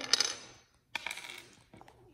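Plastic LEGO bricks clicking and clattering against each other and on a wooden tabletop as they are handled and set down, in a few short sharp clicks with gaps between them.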